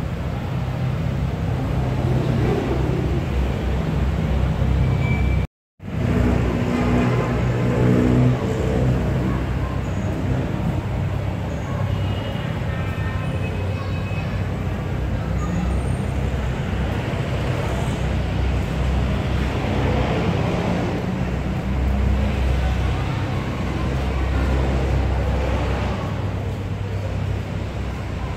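Car engines idling and running in a packed parking lot full of cars, over a steady low rumble and the chatter of a crowd. The sound drops out completely for a moment about five and a half seconds in.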